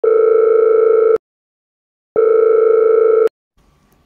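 Two long electronic beeps, each a little over a second long and about a second apart, a steady buzzy mid-pitched tone like a telephone signal.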